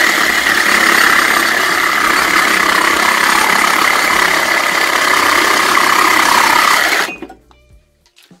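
DeWalt DCS380 20V cordless reciprocating saw cutting through a 2x4 clamped in a vise, on a battery that is almost dead. The saw runs steadily through the cut and stops suddenly about seven seconds in.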